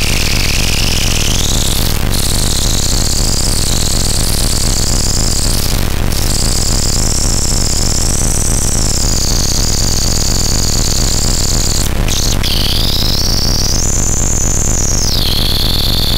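Loud experimental electronic noise from hand-played DIY circuitry and a bare circuit board. A dense hiss and a steady low hum run under a high whistling tone that slides up and down, with a few brief dropouts.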